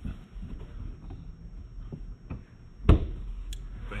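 Rear seat back of a 2022 Ford F-150 crew cab being folded down: soft handling noise and small clicks, then a loud thud nearly three seconds in as it drops into place, followed by a sharp click.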